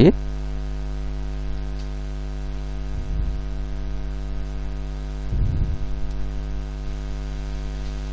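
Steady electrical mains hum, a buzzy drone with a stack of evenly spaced overtones, picked up by the recording. There are two faint brief sounds about three seconds and five and a half seconds in.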